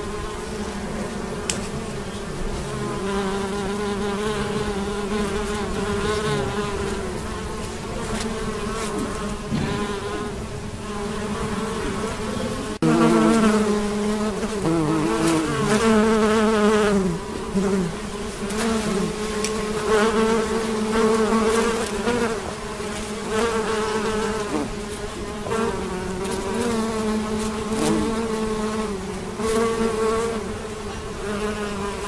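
A swarm of honeybees buzzing as they fly around and forage, several wing-buzz tones overlapping and wavering in pitch. The buzz grows suddenly louder a little before halfway through, as if a bee comes close.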